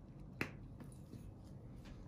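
A single sharp click about half a second in, over quiet room tone.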